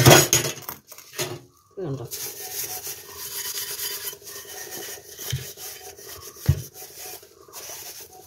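A steel bowl scrubbed by hand in a stainless steel sink: steady rubbing and scraping of metal, with a couple of dull knocks from the dish against the sink.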